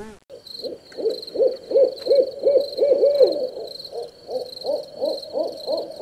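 An owl hooting in a rapid run of short notes, about three a second, each note rising and falling in pitch, over a high steady chirring of night insects.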